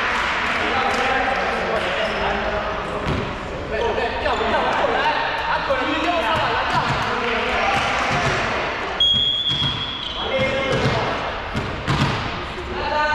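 Players' voices in a large gym hall, with a volleyball thudding on the floor several times and a referee's whistle blowing once for about a second, about nine seconds in.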